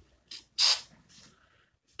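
Aerosol spray-paint can hissing in two short bursts in the first second, a brief puff and then a slightly longer spray.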